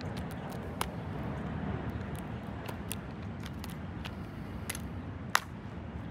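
A small hatchet striking a lithium-ion phone battery lying on a phone: a few sharp knocks, one about a second in and the loudest near the end, with lighter taps between. The battery does not catch fire or vent.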